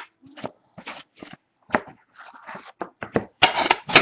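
Trading cards handled at a round metal tin: a string of short scrapes, slides and light clicks as cards are pulled out and shuffled. There is a sharp click right at the start, and the handling grows busier and louder near the end.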